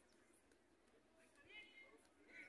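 Near silence: faint open-air ambience, with a faint distant voice calling out briefly near the end.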